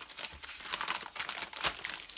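Foil-lined plastic bag crinkling as hands handle it and pull a magazine out of it, a rapid, irregular crackling.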